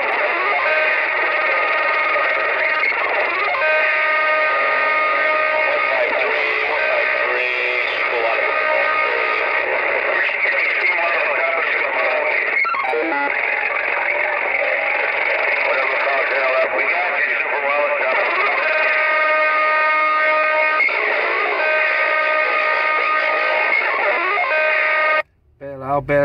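Distorted music with steady held tones and warbling effects, coming over the air through a CB radio speaker on channel 19, with the thin, narrow sound of AM radio. It cuts off briefly about a second before the end.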